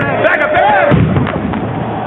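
Men shouting in a concrete tunnel, with a heavy thud about a second in.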